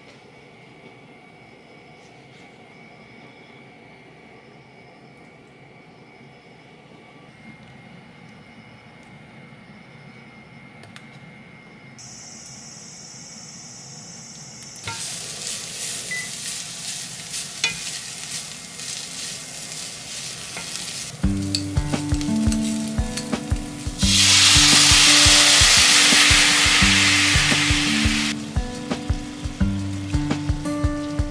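Food frying in a pan: a crackling sizzle starts about halfway through, with a loud steady hiss for about four seconds near the end. Background music with a stepping bass line comes in over it.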